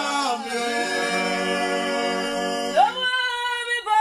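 A small group of voices singing a worship song a cappella, holding one long chord together, then sliding up into a new phrase near the end.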